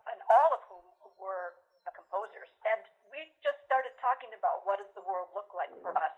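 Only speech: a woman talking steadily, with the thin, narrow sound of a telephone or call line.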